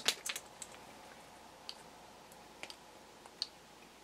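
A few faint, scattered handling clicks and taps, about half a dozen over four seconds, as a night vision unit or camera is handled to adjust its focus.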